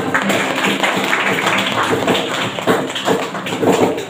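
Hand clapping mixed with strummed acoustic guitars: a dense run of sharp claps over steady ringing chords, with no singing.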